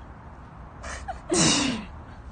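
A short breathy huff, then a loud burst of a woman's laughter that falls in pitch, about a second and a half in.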